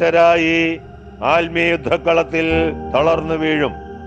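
A man speaking in slow, drawn-out phrases, four short phrases with pauses between, over soft background music with steady held tones.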